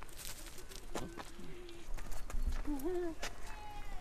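Voices at low level, with several sharp knocks, the clearest about a second in and again a little past three seconds.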